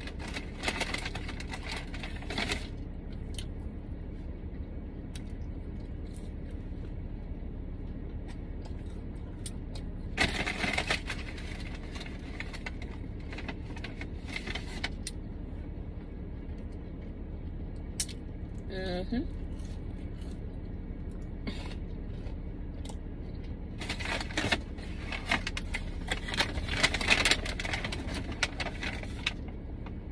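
Close-up chewing of a burger and fries, with the paper wrapper rustling and crackling in bursts near the start, about ten seconds in, and through the last few seconds. Under it runs a steady low rumble from the car.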